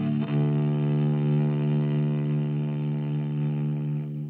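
Six-string electric cello, bowed and amplified. A quick run of notes gives way, about a quarter second in, to one long held low note that sustains steadily and starts to die away at the very end.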